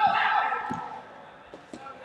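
Raised voices echoing in a gymnasium, with a few faint ball bounces on the floor; the sound dies down through the second half.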